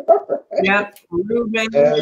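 Women laughing, mixed with a few spoken syllables.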